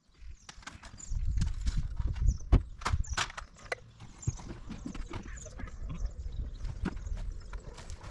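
Irregular knocks and clatter of tools and gear being handled and unloaded at an open van, over a low rumble of wind on the microphone; both are strongest from about one to three and a half seconds in.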